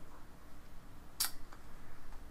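A single short, sharp click about a second in, over faint room noise.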